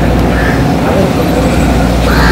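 A person's voice over a steady low rumble.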